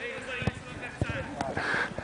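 Footballs being kicked during a warm-up, about three sharp thuds roughly half a second apart, over faint distant shouting from the players.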